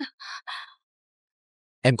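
Two quick, breathy gasps in succession from a person in an emotional argument, followed by a pause.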